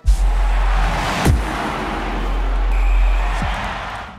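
Logo-ident sound effect: a sudden deep boom opening into a sustained low rumble under a rushing noise wash, with two short falling low thuds, fading out near the end.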